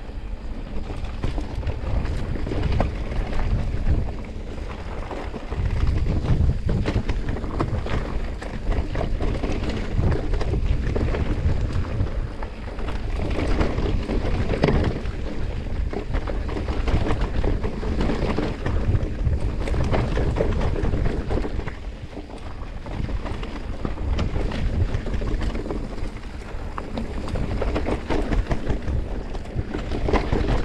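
Wind buffeting an action camera's microphone while a mountain bike rides a rough dirt trail, with tyre noise and frequent knocks and rattles from the bike over bumps. The rumble swells and eases over the ride.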